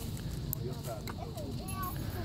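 Faint clicking and handling noise as forceps work a circle hook out of a small channel catfish's mouth, with a single sharp click about half a second in. Faint voices sound in the background.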